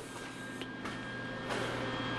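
Steady garage room tone: a low hum with an even hiss underneath, rising a little partway through.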